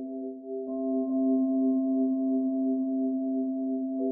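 Ambient background music: a held chord of steady, ringing tones with a slow wavering pulse, and a higher note joining a little under a second in.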